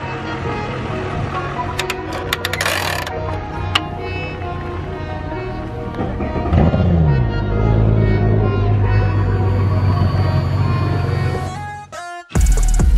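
Background music throughout. About halfway in, a bass boat's outboard motor is started from the console's push-button, its pitch dropping as it settles into a steady idle.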